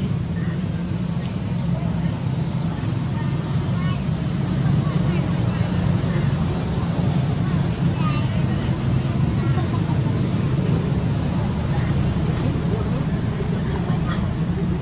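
Steady low rumbling outdoor background noise with faint distant voices.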